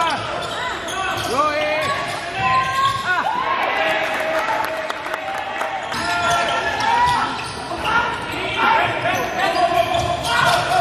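Live basketball court sound in a large echoing gym: the ball bouncing on the hardwood floor, sneakers squeaking as players cut and stop, and players' voices calling out.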